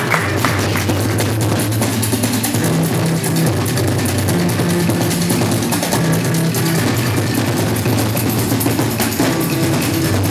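Rock music played loud: a drum kit with cymbals, shifting bass notes and guitar.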